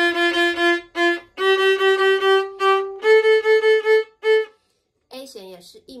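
Solo violin playing the notes of the second finger pattern on the D string as a rising step-by-step scale. Each pitch is repeated in short, even bowed strokes, about four or five a second, and the three pitches climb over about four and a half seconds. A woman's voice starts talking near the end.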